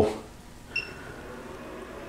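A single short electronic beep from a bench soldering station as it powers up, switched on from a toggle, followed by a faint steady electrical hum.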